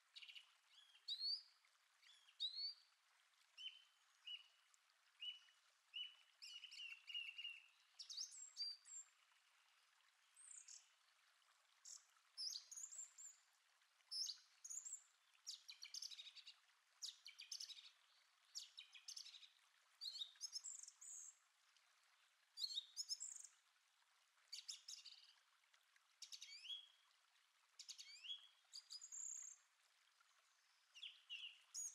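Faint songbirds chirping and singing in woodland, short calls every second or so, with a quick run of repeated notes a few seconds in.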